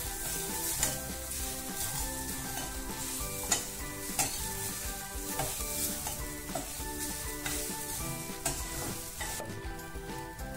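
Metal spatula stirring and scraping grated fresh coconut around a stainless steel pan as it roasts, with a sharp clink against the pan every second or so. Soft background music with a melody plays underneath.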